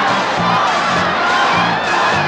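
A loud crowd shouting and cheering over live pop music with a steady, repeating bass line.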